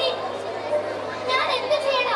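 Children's voices speaking stage lines through microphones, over a steady low hum from the sound system.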